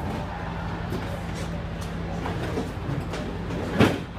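A steady low hum of background noise, with a few faint clicks and one sharp knock near the end.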